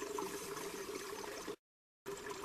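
Faint, steady background noise with a low hum in it, which cuts off abruptly into dead silence about one and a half seconds in.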